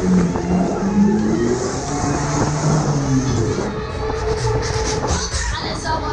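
A Huss Break Dance fairground ride spinning, heard from one of its cars: a steady low rumble from the ride's machinery under loud music from the ride's sound system.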